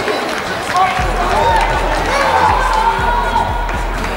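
Players' shouts and calls carrying across a near-empty football stadium during play, over a low rumble.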